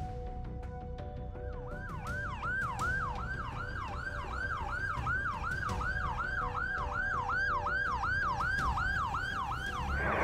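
UK ambulance siren on a fast yelp, a quick rise-and-fall wail repeating about two and a half times a second, coming in about a second in, over a low rumble of traffic.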